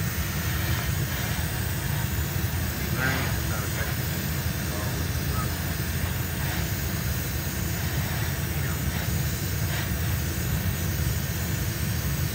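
Steady drone and hiss of a hobby paint spray booth's extraction fan running.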